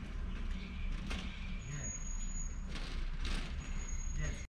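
Low steady rumble of an idling vehicle engine, with faint voices in the background.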